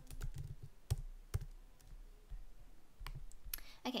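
Typing on a computer keyboard: a quick run of key clicks in the first second and a half, then a few more clicks near the end.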